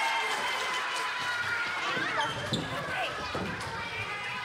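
Children's voices and footsteps on a tiled floor, with a held note of music fading out over the first two seconds.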